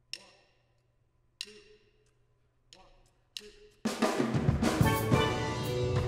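A count-in of four sharp clicks, the first three evenly spaced about a second and a third apart and the last quicker. Then a steel drum band with drum kit comes in together, playing a reggae groove, about four seconds in.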